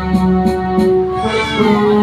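Music with a melody of held notes; about a second and a half in, a high note slides down in pitch.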